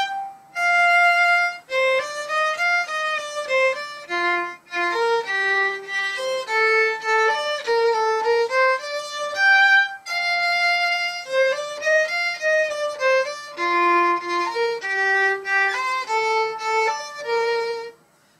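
Solo violin, bowed, playing a melody that moves up and down in notes of mixed length, with short breaks about four and ten seconds in.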